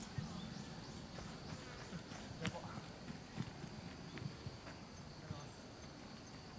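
Faint outdoor ambience at a football pitch: scattered soft thumps and a single sharp click about two and a half seconds in, over a faint steady high hiss.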